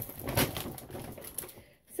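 A printed bag rustling and crinkling as it is handled and rummaged through, loudest about half a second in and fading out near the end.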